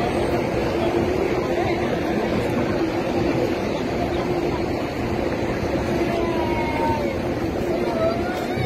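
Hubbub of a dense crowd on foot, many voices mingled into a steady din, with a steady hum running beneath it.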